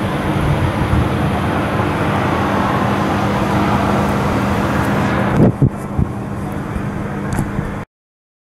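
Steady road-traffic noise with a low hum under it. About five and a half seconds in the sound turns duller, and a few sharp clicks follow.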